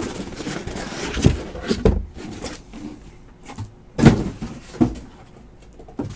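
A box of 2017 Immaculate Football trading cards being handled and opened by hand: a few scattered knocks and rustles, the loudest about four seconds in.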